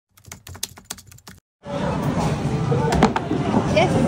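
A quick run of sharp clicks, like typing, then from about one and a half seconds in the busy din of an amusement-park game stall: chattering voices with music behind them and one sharp knock about three seconds in.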